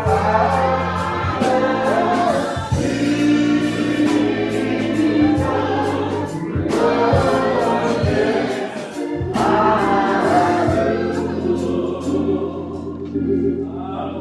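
Church choir singing a gospel song with band accompaniment: a steady bass line and regular drum hits under the voices. The music thins out near the end.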